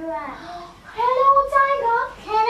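A young child's voice singing or chanting, with a long held note about a second in.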